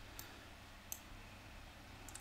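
Two faint, sharp clicks of a computer mouse, one just after the start and one about a second in, over a low steady hiss.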